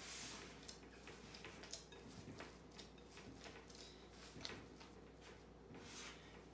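Faint, soft squishing and handling noises as hands punch down risen yeast dough in a glass bowl, pressing the air out, with a few light clicks and taps.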